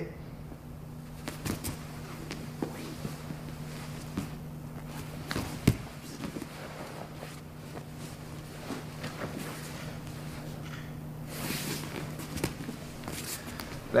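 Two grapplers in gis moving on a grappling mat: fabric rustling and scattered soft thumps of bodies and feet, with one sharper thump about halfway through. A steady low hum runs underneath.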